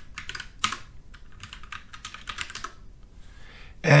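Typing on a computer keyboard: a quick run of keystroke clicks that stops after about two and a half seconds.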